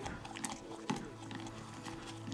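Droppings being mashed and stirred in saline solution with a rod inside a plastic conical beaker, making an emulsion for a parasite-egg flotation test: faint soft scrapes and a few small clicks.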